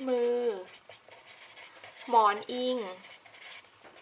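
A felt-tip marker pen writing on a paper sheet, scratching in short strokes in the pauses between a woman's spoken words.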